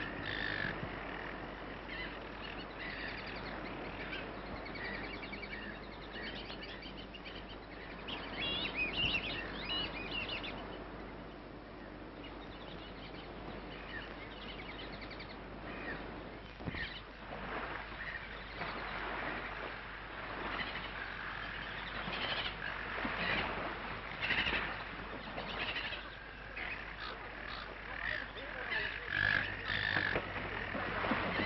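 Bird calls in quick chirping trills, heard twice in the first third, over the steady low hum of an old film soundtrack. Irregular short knocks and rustles follow in the second half.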